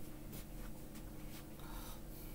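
Faint scratching of writing on paper, in short irregular strokes, over a steady low electrical hum.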